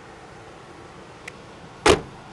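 A single loud, sharp knock near the end, typical of the hard plastic lid of a pickup's under-seat storage compartment dropping shut. A faint click comes a little before it.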